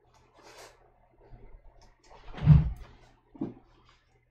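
Small scraping and tapping sounds of a paintbrush mixing watercolour on a palette, with a dull thump about two and a half seconds in, the loudest sound, and a shorter knock near the end, over a faint steady hum.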